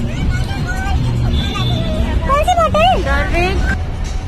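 A young child's high voice calling out in short bursts over background chatter and music, with a steady low hum underneath.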